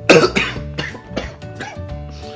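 A young man coughing about five times in quick succession, the first coughs the loudest, from inhaling baby powder, over background music.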